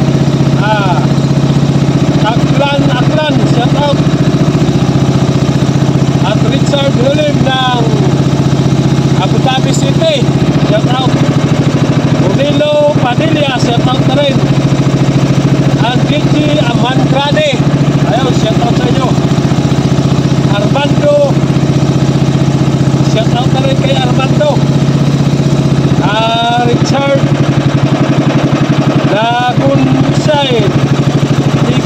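Small engine of a motorized outrigger boat (bangka) running steadily under way at a constant speed, a low even drone.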